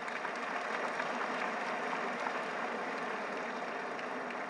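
Audience applause, a steady patter of many hands clapping, held at an even level.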